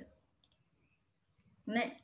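Speech trails off into a pause of near silence, broken by a single faint click about half a second in, before a voice comes back briefly near the end.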